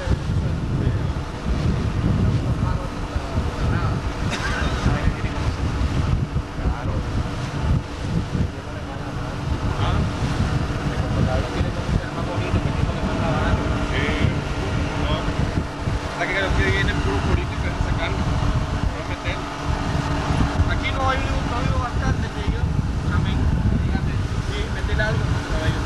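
Wind buffeting the microphone on a moving motorboat, with the boat's engine humming steadily underneath and indistinct voices now and then.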